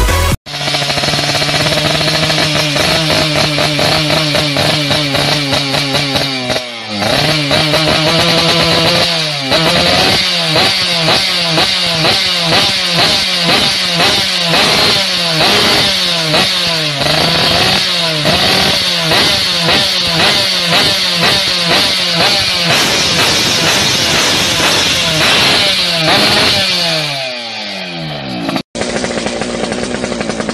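Yamaha F1ZR single-cylinder two-stroke underbone engine running through an aftermarket KBA racing exhaust. It holds a steady speed at first, then is revved up and down repeatedly, the pitch climbing and dropping again and again. A second of intro music opens it, and near the end the sound cuts to another two-stroke underbone running.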